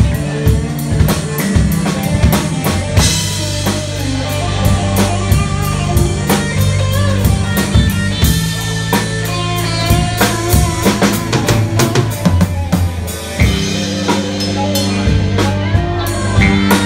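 Live rock band playing loud: a drum kit with busy snare, bass-drum and cymbal strokes over held low bass notes, with electric guitar.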